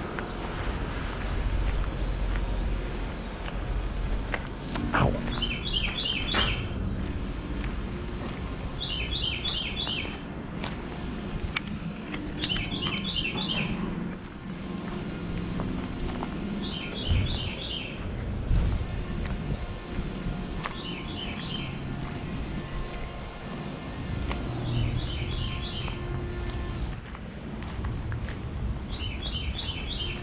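A songbird sings the same short phrase of quick clipped notes over and over, about every four seconds, over a steady low outdoor rumble.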